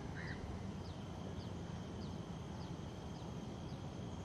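Steady low outdoor background noise with a small bird's short falling chirps repeating about twice a second.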